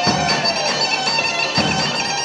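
Greek folk dance music played on bagpipe and drum: a reedy melody over a steady drone, with a drum beat about every three-quarters of a second.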